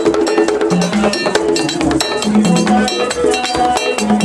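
Live Haitian Vodou ceremonial music: fast, dense percussion with the clang of a struck metal bell, over held pitched tones.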